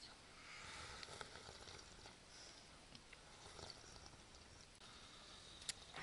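Near silence: faint outdoor ambience with a few small rustles and ticks, and one sharp click near the end.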